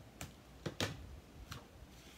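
A tape-runner adhesive and cardstock being handled on a craft desk make a few short clicks and taps: four in all, the loudest a close pair just under a second in.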